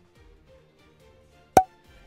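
Faint background music with one sharp click about one and a half seconds in.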